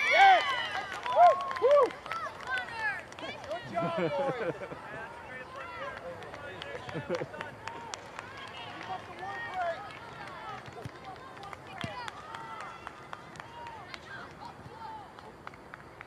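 Several voices shouting across an outdoor soccer field, players and sideline spectators calling out. The shouting is loudest in the first two seconds, while play is in front of the goal, then continues as scattered calls.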